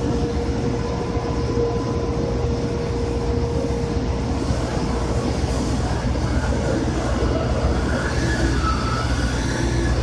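Heavy engine machinery running with a steady low rumble and a steady hum tone that fades out about halfway through. Faint, wavering squeaks come in during the second half.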